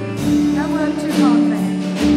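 Church worship band playing a slow hymn: a drum kit with cymbal crashes, one near the start and one about a second in, over sustained keyboard chords.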